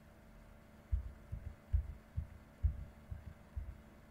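About eight soft, low thumps, irregularly spaced about half a second apart, starting about a second in, over a faint steady hum: knocks carried through the desk to the microphone while someone works at a computer.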